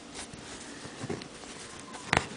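Faint rustles of doubled embroidery thread drawn through cotton fabric stretched in a hoop, with two soft brief scratches about a quarter second in and about a second in.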